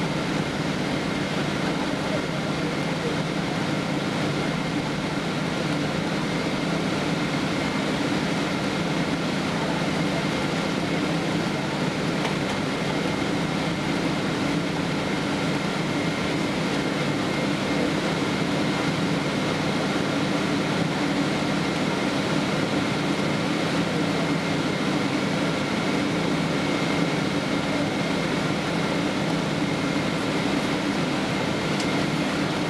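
Steady cabin noise inside a Boeing 777-200ER taxiing on the ground: the even rush of the idling jet engines and cabin air-conditioning, with a few constant hums and a faint whine held throughout.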